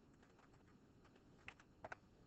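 Faint keystrokes on a computer keyboard as numbers are typed in: a few light taps, then four sharper clicks in two quick pairs in the last half second.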